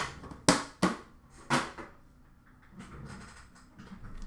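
Hands handling hockey card packs on a glass counter: four sharp clacks in the first two seconds, then quieter handling noise.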